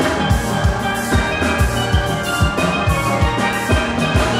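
A steelband playing: an ensemble of steel pans sounding many ringing pitched notes together, over a drum kit keeping a steady beat.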